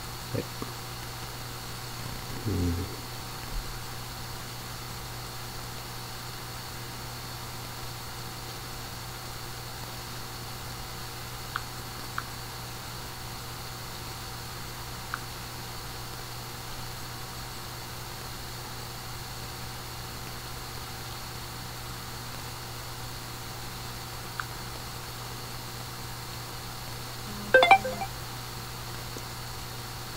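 Room tone: a steady low electrical hum with hiss, broken by a few faint clicks, a short mumble about two and a half seconds in, and a louder brief sound near the end.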